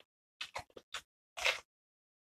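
A crisp raw vegetable being bitten and chewed: a quick series of short crunches, the longest and loudest about one and a half seconds in.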